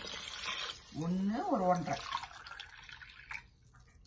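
Water poured into the stainless-steel inner pot of an electric pressure cooker over sautéed vegetables, splashing. About a second in, a short vocal sound rising then falling in pitch, louder than the pouring.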